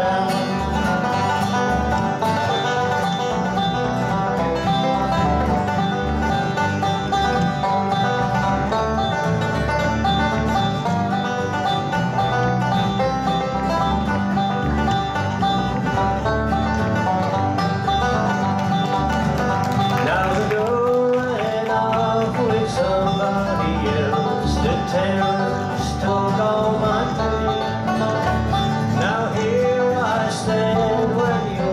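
Bluegrass band playing an instrumental stretch: rapid five-string banjo picking out front, with acoustic guitar rhythm and upright bass keeping steady time.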